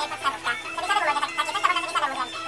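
A person's voice babbling in quick bursts with no clear words, over background music with a steady held note.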